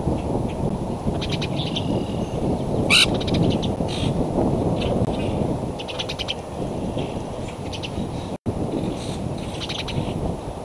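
Steady wind rumble on an outdoor microphone, with short high bird chirps and quick chittering trills every second or so; the sharpest, loudest chirp comes about three seconds in.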